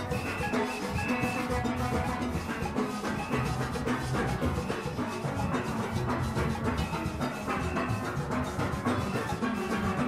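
A steelband playing live at close range: many steel pans struck rapidly with sticks in a dense, steady rhythm, with drums and percussion under it.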